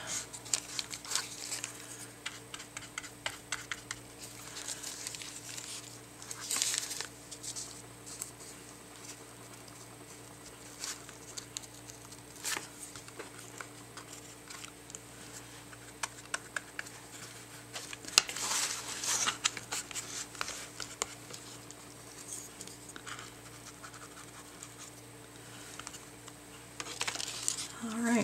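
Paintbrush brushing gel medium onto paper: soft scratchy strokes in irregular runs, with light rustling of thin rice paper as it is pressed down, over a steady low hum.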